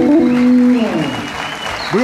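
Studio audience applauding while music ends, its last held note falling away about a second in.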